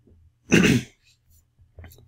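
A person clearing their throat once, a short harsh burst about half a second in.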